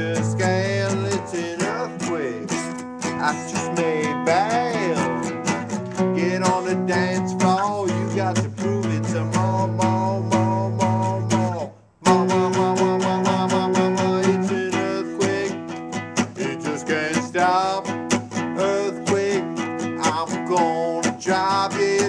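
Acoustic guitar strummed in a steady, driving rhythm. The sound cuts out for an instant about twelve seconds in.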